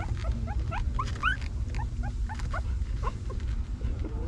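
Newborn puppies squeaking: many short, high, upward-sliding squeaks in quick succession, over a steady low rumble.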